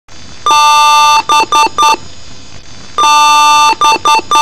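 Desktop PC's BIOS beep code at power-on: one long beep followed by three short beeps, the pattern starting again near the end, over a steady background hum. A repeating long-and-short beep pattern during the power-on self-test is the BIOS signalling a hardware error.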